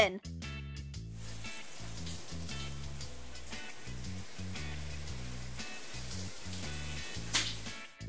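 Shower running: a steady hiss of water spray, heard over background music with a steady bass line.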